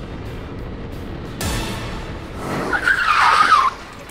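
Rental go-kart heard from onboard at speed, with a loud wavering tyre squeal lasting about a second near the end that cuts off suddenly.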